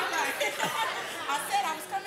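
Indistinct chatter: several women's voices talking over one another.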